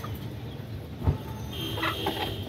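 Desi hens clucking, with a short pitched call near the end. A dull thump about halfway through is the loudest moment.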